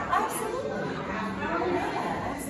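Several people talking over one another in the background, indistinct chatter with no clear words, in a reverberant room.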